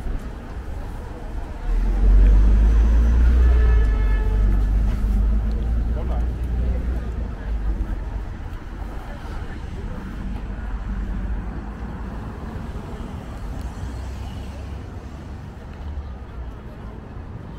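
City street traffic: a motor vehicle passes close with a low engine rumble that swells suddenly about two seconds in and fades slowly away. A short high tone sounds around four seconds in.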